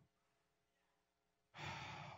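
Near silence, then about a second and a half in a man's loud sigh, an exhaled breath close into a handheld microphone.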